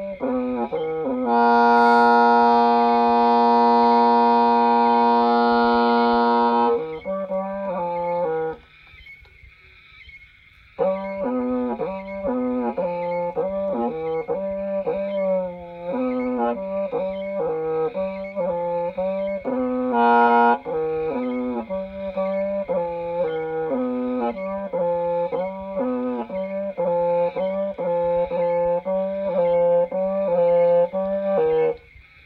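Hmong raj nplaim, a bamboo free-reed pipe, playing a slow melody. A long held note comes near the start and stops briefly, then a run of shorter notes steps up and down.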